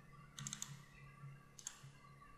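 Clicking at a computer: a quick run of clicks about half a second in, then a single click near the end, over a faint low hum.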